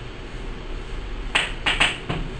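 Low steady room hum, then three sharp clicks in quick succession in the second half.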